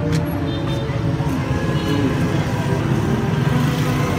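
Steady low rumble of motorbike and street traffic, with faint chatter of voices in the background.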